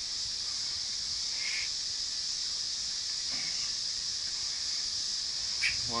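Steady high-pitched drone of an insect chorus, unbroken and even throughout, with a brief faint sound about a second and a half in.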